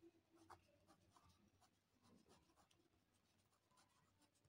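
Very faint sound of a pen writing block capitals on squared notebook paper: short, scattered strokes of the tip on the page.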